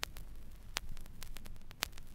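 Vinyl LP surface noise in the silent groove between tracks: irregular sharp clicks and pops, several a second, over a low hum.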